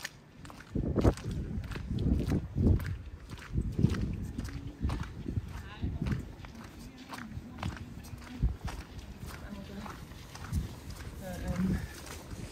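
Footsteps of a person walking on a wet paved path, about two steps a second. Voices of passers-by talk briefly midway and again near the end.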